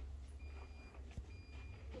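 Two faint electronic beeps, each about half a second long and about a second apart, over a low steady rumble.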